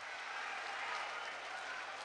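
Arena crowd applauding and cheering in a steady wash of noise.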